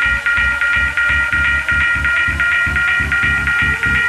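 Minimal techno in a DJ mix: a fast, steady bass-heavy beat under a sustained high synth chord that pulses in time with it. A tone slides upward over the last second or so.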